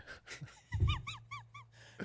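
Sound effect played from a studio soundboard: a quick run of about five short, squeaky rising-and-falling tones over a steady low hum.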